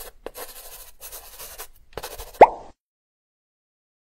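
Sound effects for an animated hand-lettered title: a run of short, scratchy pen-stroke swishes as the letters are drawn, then a single rising 'plop' about two and a half seconds in, the loudest sound.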